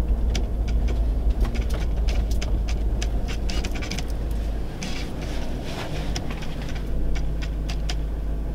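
2002 Chevy Avalanche's 5.3L Vortec V8 running still cold after sitting two weeks in freezing weather, heard as a steady low rumble inside the cab while the truck creeps along, with scattered sharp clicks and crackles throughout.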